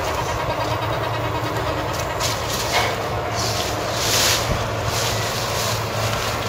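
Steady low hum of a vehicle engine, with short bursts of rustling as sweet potato vines and leaves are pushed aside by hand, the loudest rustle about four seconds in.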